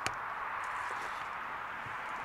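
Steady background hiss, with one sharp click right at the start and a faint tick about a second in.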